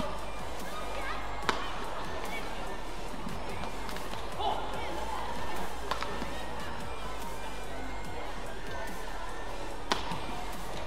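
A badminton rally: a few sharp cracks of rackets striking the shuttlecock, the clearest about a second and a half in, about six seconds in and just before the end, over steady arena noise and background music.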